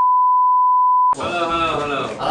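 A single steady, pure beep tone, edited in over the cut, held for about a second and a half and cutting off abruptly; voices begin right after it.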